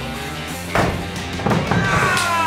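Background music over two sharp wooden knocks, the first about a second in and a quieter one half a second later, from firewood being split with an axe on a chopping block.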